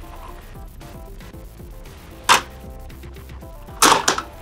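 Quiet background music, with two sharp plastic clacks about a second and a half apart, the second louder, as a toy car's grabber claw shoots out and snaps onto a figure.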